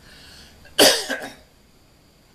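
A man coughing into his fist: a faint intake of breath, then one sharp loud cough a little under a second in, followed at once by a smaller second cough.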